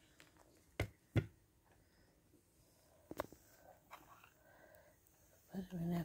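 A few sharp knocks or taps, two close together about a second in and one around three seconds, as things are handled on a desk; faint room tone between them, and a voice begins near the end.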